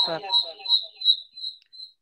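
A high whistle-like tone pulsing about three times a second, growing fainter and dying away near the end, with a woman's single spoken word at the start.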